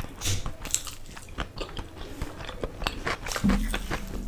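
Close-miked chewing of a large mouthful of khichdi eaten by hand, with many small wet clicks and smacks of the mouth. A brief low hum comes about three and a half seconds in.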